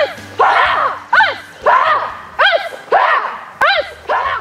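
Karate instructor and class shouting counts in call and response: a single voice calls each count and a group of students shouts it back, about one exchange every 1.2 seconds, in time with punches.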